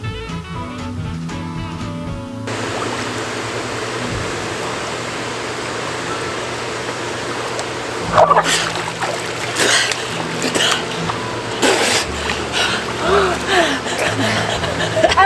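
Background music that stops about two seconds in, giving way to the steady rush and bubbling of hot tub jets. About eight seconds in, water splashes and a gasp as a head breaks the surface, followed by breathless laughter.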